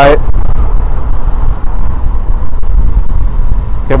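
Steady low rumble of a motorcycle being ridden through city traffic: engine, wind and road noise picked up by a camera on the bike.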